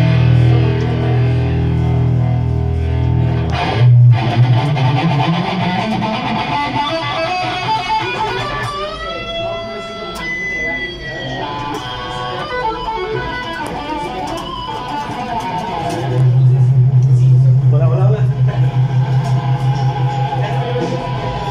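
Electric guitar being played: heavy sustained low notes at first, a sliding high note in the middle, then fast repeated low notes from about three-quarters of the way through.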